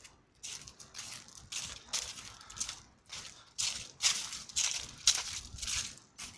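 Footsteps crunching dry fallen leaves on a concrete path, about two steps a second, louder in the second half.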